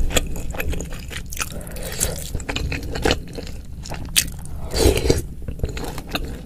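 Close-miked mouth sounds of chewing and biting a mouthful of spicy bakso aci soup with whole chilies: wet crunching and quick clicks, loudest about five seconds in.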